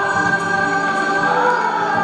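Hindustani music played by a large sitar ensemble: sustained notes with slow sliding pitch glides.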